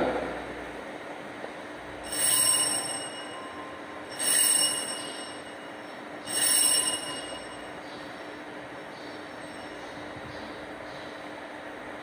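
Altar bells rung three times at the elevation of the chalice in the consecration. Each ring is a bright metallic jangle of about a second, roughly two seconds apart.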